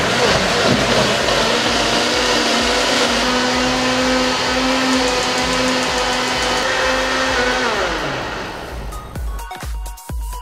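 Electric mixer grinder grinding a wet coconut-and-spice masala paste, its motor running steadily with a whine, then winding down with a falling pitch about eight seconds in.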